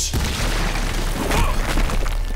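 Cartoon crash sound effect: a sudden heavy boom, then a deep rumble and clatter of large rock chunks falling and smashing down.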